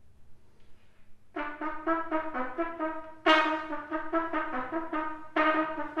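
Solo trumpet coming in about a second in with a quick run of short, detached notes, then louder accented notes about two seconds later and again near the end.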